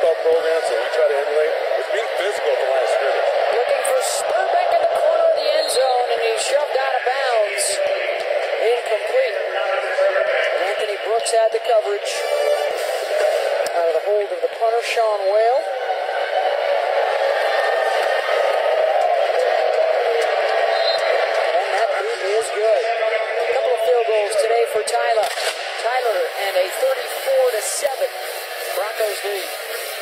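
Muffled, unintelligible voices with a thin, narrow sound, continuous and at a steady level.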